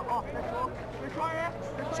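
Stadium crowd noise with a few short voices calling out over it.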